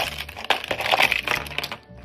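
Plastic toy doctor's kit case being lifted and tilted, with a dense run of plastic clattering and rattling from the case and its contents that stops just before the end.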